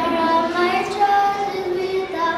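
A young girl singing a song solo, unaccompanied, holding each note for about half a second as the tune steps up and down.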